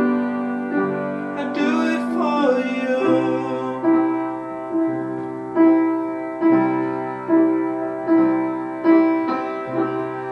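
Piano playing evenly struck chords a little under a second apart, each ringing and fading before the next. About two seconds in, a man's voice sings a short gliding line over it.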